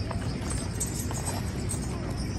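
Hooves of tonga horses clip-clopping as they walk, with music playing in the background.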